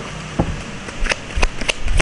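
A deck of tarot cards being shuffled by hand: a series of short, sharp papery clicks and taps as the cards slap together.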